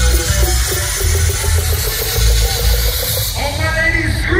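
Loud live electronic dance music over a festival main-stage sound system, with heavy pulsing bass. About three seconds in it changes abruptly to a different passage carried by held, gliding pitched tones.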